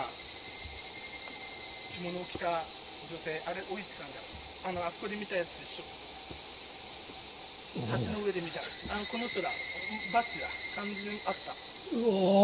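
A dense chorus of cicadas droning steadily at a high pitch without a break.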